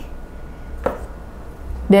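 A single sharp tap about a second in, as a small plastic cream tube is set down on the table, over a faint low hum.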